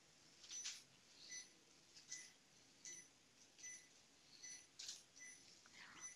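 Near silence with a patient monitor's faint pulse beeps: a short high tone about every 0.8 seconds, keeping time with a heart rate in the mid-seventies. A few faint soft clicks from handling lie between them.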